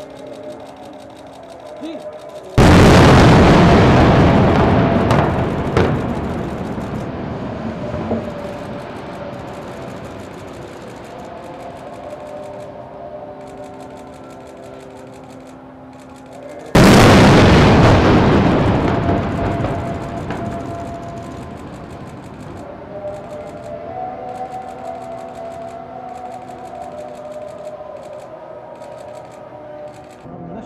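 Two airstrike explosions about fourteen seconds apart, each a sudden loud boom that dies away slowly over several seconds.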